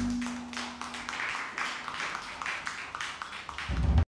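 The band's final sustained chord from electric guitars and keys fades out within the first second, then a small audience claps unevenly, a scattering of hands. A low rumble swells just before the sound cuts off.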